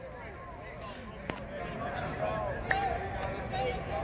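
Distant shouts and calls of players and coaches across an open field, over a steady background hum. Two sharp clicks come about a second and a half apart.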